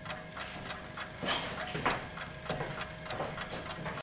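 A person getting up and moving about, with a few louder rustles and shuffles about a second and a half, two seconds and two and a half seconds in, over a faint, quick, regular ticking.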